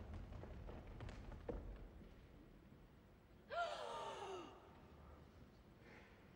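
A woman's voice lets out a shocked, sighing cry of dismay about three and a half seconds in, sliding down in pitch over about a second. A few faint knocks come before it.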